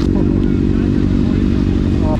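Motorcycle engine idling steadily.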